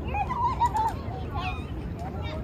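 Outdoor waterfront ambience: a steady low rumble, with a short wavering call lasting under a second near the start and scattered faint voices.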